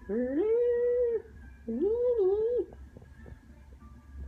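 Two howling calls. Each slides up in pitch and is then held for about a second, and the second one dips and climbs again in the middle.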